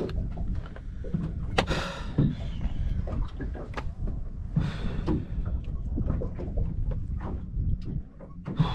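Wind rumbling on the microphone, with scattered knocks and clicks on the deck of a small boat; the sharpest knock comes about one and a half seconds in.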